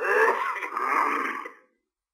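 A man's voice drawn out in one long, wavering vocal sound without clear words, lasting about a second and a half before it stops.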